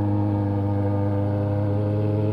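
Yamaha XJ6's inline-four engine with a 4-into-1 muffler-less exhaust, running at a steady, unchanging engine speed while the motorcycle cruises along the road.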